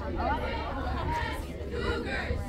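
Indistinct chatter of several people's voices close by, over a steady low rumble.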